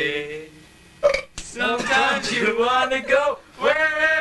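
Male voices singing in long, wavering notes, broken by a short gap about a second in.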